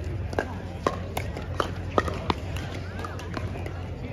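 Pickleball paddles striking the plastic ball in play: about eight sharp pops at irregular intervals, some louder and some fainter.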